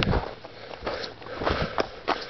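A person breathing hard close to the microphone, a few short, noisy breaths, while climbing a steep snowy slope.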